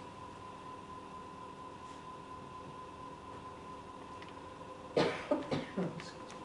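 A woman coughing about four times in quick succession into her elbow near the end, after a few seconds of quiet room tone with a faint steady hum.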